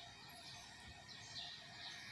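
Quiet background ambience with a few faint, high bird chirps.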